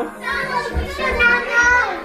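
Young children's excited voices and cries, with background music.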